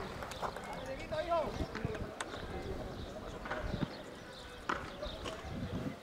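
Indistinct distant voices of players and spectators calling out around a football pitch, with a few sharp knocks scattered through.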